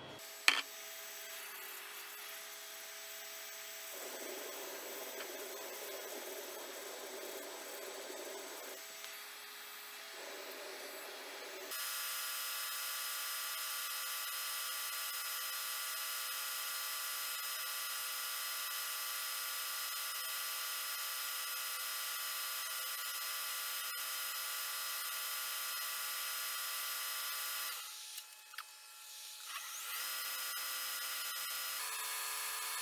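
Wood lathe running with a sanding attachment in its drill chuck, grinding a cast epoxy resin block held against it by hand: a steady motor whine under a rasping sanding noise. The sound drops away briefly near the end, then resumes.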